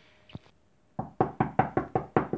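Knocking on a door: a quick run of about eight knocks, starting about halfway through and still going at the end.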